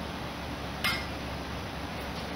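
A single light strike on a toy xylophone, one short bright clink about a second in with a brief ring, as the horse bumps the bars with its muzzle.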